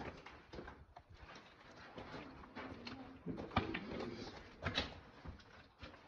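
Footsteps on rock and loose stones, irregular knocks and scuffs of people walking over a rocky path, with rustle from the handheld camera.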